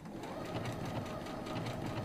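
Domestic sewing machine running steadily, stitching a buttonhole stitch around a fabric appliqué.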